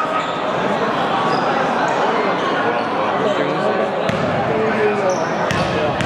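Overlapping chatter of spectators in a large sports hall, with a couple of sharp knocks near the end from a basketball bouncing on the wooden court.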